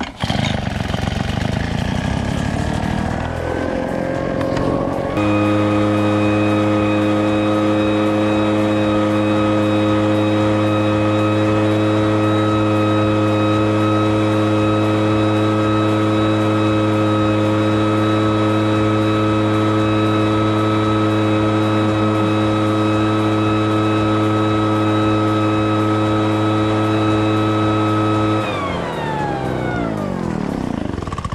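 Two-stroke gas backpack leaf blower, a Poulan Pro: the engine revs up over the first few seconds, holds a steady full-throttle drone for about twenty seconds while blowing, then the throttle is released and it winds down near the end.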